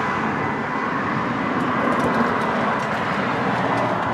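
Steady rushing noise of road traffic, with a few faint clicks about two seconds in.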